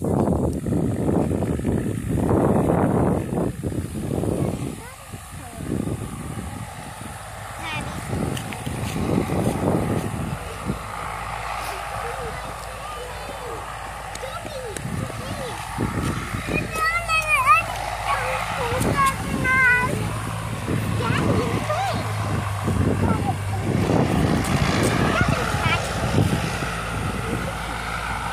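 Indistinct voices of people close by, with the faint drone of a Cessna 172's engine in the distance as it comes in to land on the grass strip, most noticeable as a steady low hum about two thirds of the way through.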